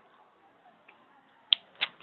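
Quiet room tone, then two short, sharp clicks about a third of a second apart near the end.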